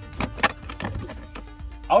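Background music with a few short sharp clicks and knocks, the loudest about half a second in, from a plastic footwell side trim panel being pulled free of its clips and set aside.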